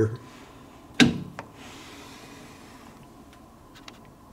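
A single sharp knock about a second in, a lighter click just after it, then faint rubbing and a few small ticks, from handling on the lathe.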